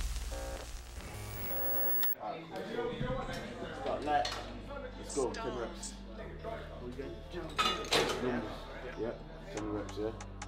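The tail of an intro logo sting fades out in the first two seconds. Then comes gym room sound: low voices and scattered sharp metallic clinks of weights, the loudest a couple of clinks about eight seconds in.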